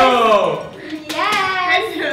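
A man and a woman laughing and exclaiming in drawn-out voices that glide up and down, with a brief sharp noise about a second in.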